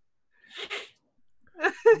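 One short, breathy puff of air from a person, less than half a second long, about half a second in. A brief voiced sound starts near the end.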